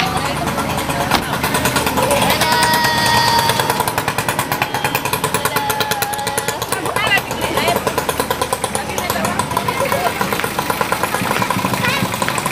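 A car engine idling close by, its fast, even pulse steady throughout, with people's voices over it.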